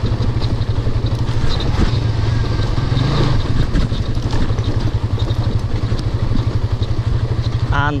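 Suzuki GSX-S150 single-cylinder four-stroke engine running at low speed while the bike is ridden slowly over a rough dirt track, with a fast, even low pulsing throughout.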